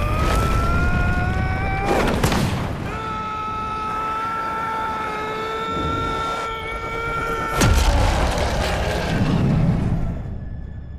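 Animated fight-scene soundtrack: a dramatic music chord that rises for the first two seconds, then holds steady, over a low rumble. Two heavy impact booms land about two seconds in and again near eight seconds.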